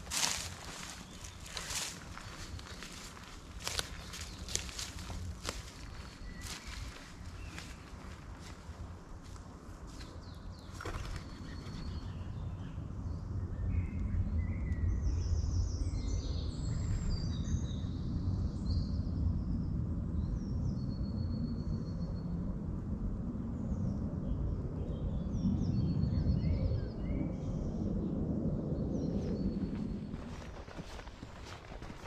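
Footsteps crunching through dry leaf litter and twigs for the first ten seconds or so, then several woodland birds singing over a low rumble that grows louder in the second half.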